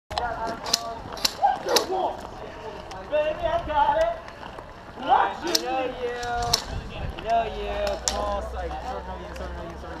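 Indistinct talking from several people, with a few sharp clicks scattered through it.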